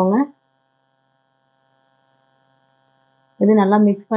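A voice speaking briefly at the start and again near the end, with near silence between apart from a faint steady hum.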